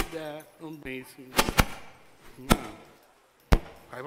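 Sharp knocks and clicks picked up directly by a headset microphone as it is put on and adjusted. There are five separate knocks, two of them close together about a second and a half in, and a man's muttered voice in the first second.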